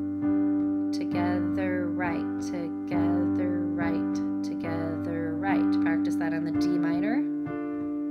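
Keyboard piano playing a G major chord over a G bass note, changing to a D minor chord over a D bass about six and a half seconds in. A voice sounds over the chords in a regular rhythm.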